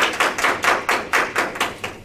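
A small group of people clapping, about four or five claps a second, dying away near the end.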